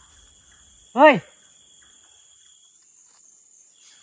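Night insects chirring as two steady high-pitched tones, the lower one dropping out about two-thirds of the way through. A man's short startled "hey" about a second in is the loudest sound.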